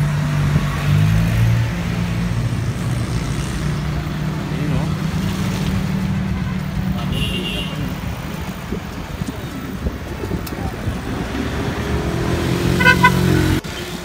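Road traffic close by: a vehicle engine running steadily with a low hum, a short horn toot about halfway through, and louder horn toots near the end.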